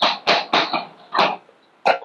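Chalk writing on a blackboard: a quick, irregular run of short taps and scrapes, about six strokes in two seconds, as the letters of a word are written.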